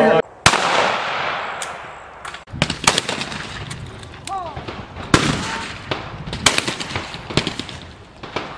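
Shotgun shots: several loud reports, one every second or two, each trailing off in a long echo.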